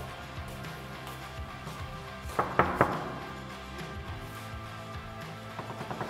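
Background music, with three quick knocks on a wooden door about two and a half seconds in, louder than the music.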